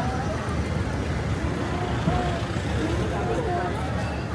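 Crowd chatter, many voices talking at once with no single speaker standing out, over a steady low rumble.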